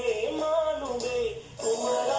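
A mid-tempo pop song with a sung melody that glides up and down over the backing music. The voice breaks off briefly about one and a half seconds in, then comes back on a held note.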